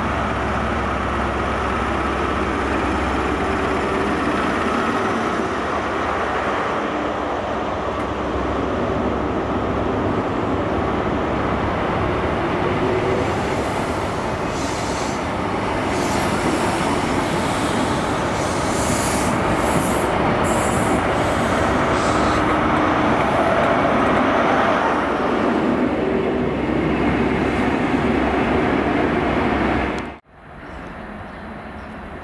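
A Class 43 HST diesel power car and its coaches running along the platform in a steady, continuous rumble. Brief high-pitched wheel squeals come midway through as the coaches pass close by.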